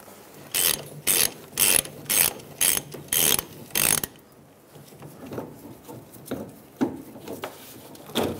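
Hand ratchet with a 15 mm socket on an extension, backing out the fuel tank strap bolt: seven loud bursts of ratchet clicking about two a second, then softer, irregular clicks over the last few seconds.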